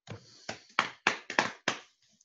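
A run of six sharp taps, about three a second, each with a short dull thud under it, from hands working at a computer.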